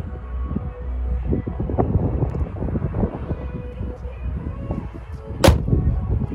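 The low, steady idle of an Audi 3.0 V6 TDI diesel, under background music. About five and a half seconds in, the bonnet is shut with one loud slam.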